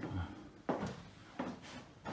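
Two short knocks, a louder one a little under a second in and a fainter one about half a second later, in a small wooden room.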